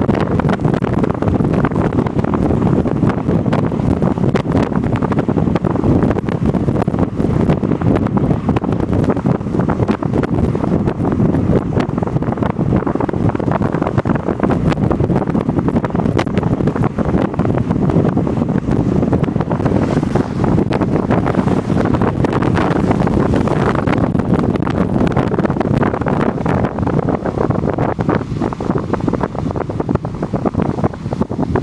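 Steady, loud wind buffeting the microphone of a camera on a moving vehicle, with the vehicle's running and road noise underneath.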